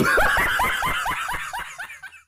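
A person's rapid snickering laugh, a quick run of short rising 'heh' sounds, about seven a second, that fades away near the end.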